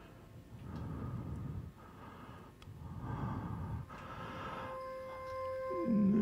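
A man breathing heavily, three long noisy breaths over a faint musical drone. About five seconds in, a steady tone enters, and at the very end a voice slides down into a low hum.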